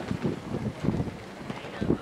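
Wind rumbling on the camera microphone in uneven gusts.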